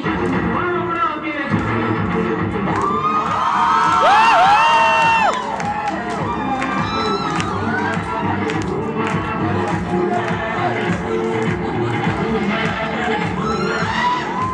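Dance music playing over a crowd cheering and whooping, the cheers loudest about three to five seconds in.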